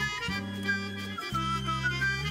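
Instrumental opening-titles theme music: held bass notes changing about once a second under a high melody line with small slides in pitch.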